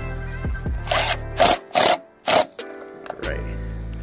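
Background music over a power drill spinning a socket extension to tighten the battery hold-down bolt. The drill runs in two short spells, one just after the start and one near the end.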